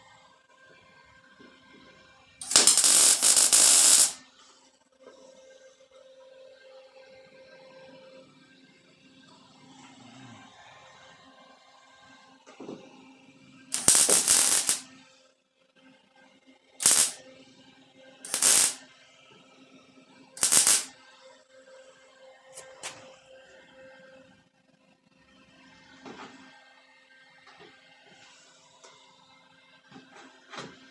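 Welder laying short welds on a steel quarter panel. Two longer runs of about a second and a half each come first, then three quick tacks a couple of seconds apart, each a loud crackle that starts and stops sharply.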